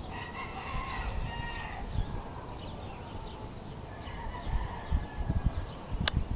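A long pitched bird call, held for about a second and a half, near the start, and a fainter one about four seconds in, over a low rumbling noise.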